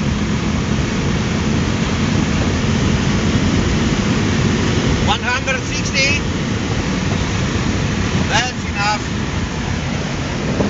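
Car interior noise at about 140 km/h under full throttle in fourth gear: a steady roar of engine, tyres and wind, with a low engine hum that fades in the first few seconds.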